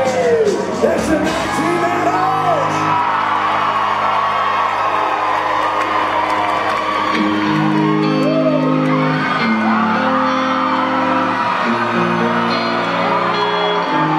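Live country-rock band playing an instrumental passage between songs, with electric guitar, drums and held keyboard chords. High whoops and shouts from the audience ring out over it, several in the first few seconds and more about eight seconds in.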